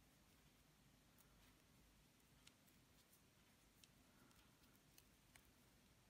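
Near silence: faint room tone with a few very faint, scattered ticks.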